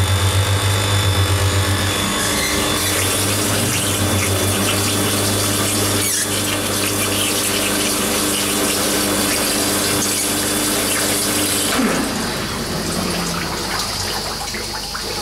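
Electric chilled-water pump running on a milk tank's cooling circuit: a steady motor hum with water rushing through the pipework. About twelve seconds in, the rushing and one of the hums drop away, with a short downward glide in pitch.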